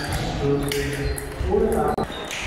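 Table tennis ball clicking sharply off bats and table a few times in a rally, over background chatter.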